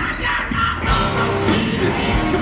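Hard rock band playing live at full volume, with drums and distorted electric guitar. The full band comes in hard about a second in, filling out the sound.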